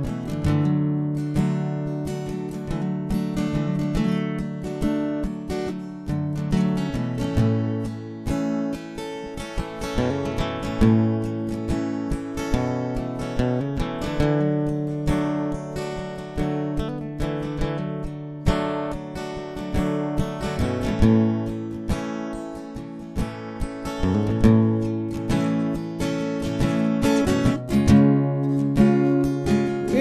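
Acoustic guitar strummed in a steady rhythm through an instrumental break, with no singing.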